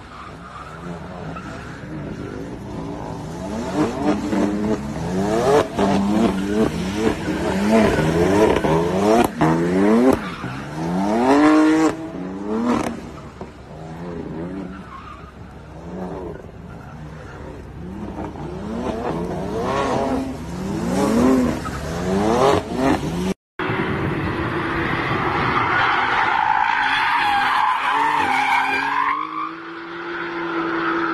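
A car engine revving up and falling back over and over as the car drifts in circles on wet pavement, heard from some distance. After a brief dropout about two-thirds of the way in, a different car drifts on a track, its tyres squealing over the engine.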